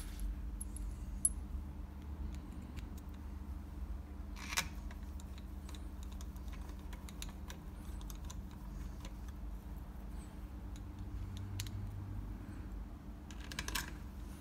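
Light metallic clinks of steel bolts and a socket being handled as the bolts go back into a scooter gearbox cover, with sharper clinks about a second in and about four and a half seconds in. A steady low hum runs underneath.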